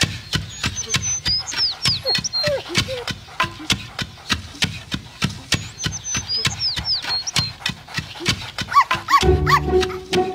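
Cartoon soundtrack: a steady clicking beat with two groups of high whistled chirps, then a small cartoon dog barking three times near the end as music with a bass line comes in.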